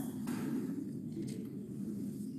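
Steady low background noise (room tone) with no distinct sound event.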